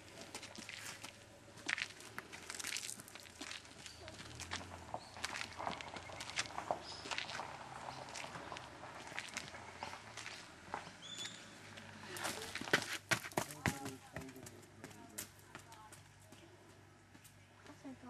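Footsteps of several people climbing outdoor steps: irregular scuffs and taps, busiest about two-thirds of the way through.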